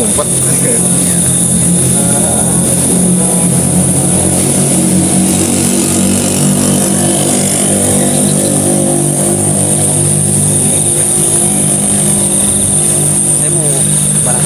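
An engine running at a steady speed: a low, even hum that holds throughout, with a steady high-pitched whine above it.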